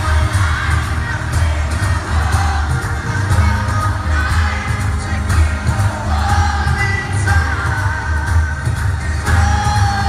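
A pop boy band performing live in an arena: a male lead singer with bass and drums pounding steadily underneath, a crowd audible along with it. It is recorded on a phone from among the audience, so the bass is heavy and booming.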